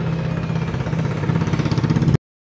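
Small motorcycle engine idling steadily.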